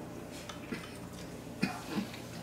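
Quiet eating of spicy ramen at a table: a couple of small clicks of a utensil against a paper bowl, and a short hum near the end.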